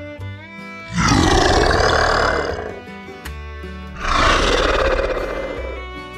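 Two long dinosaur roars, each about two seconds, the first about a second in and the second about four seconds in, loud over light background music.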